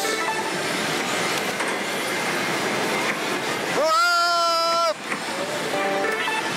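Steady pachislot parlour din of many machines' electronic sounds and music, with one sustained electronic tone about four seconds in that rises briefly at its start, holds steady for about a second and cuts off abruptly.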